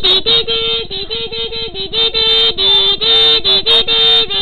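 A young girl humming or singing a wordless tune, stepping between a few notes in short held phrases, like a show's intro jingle.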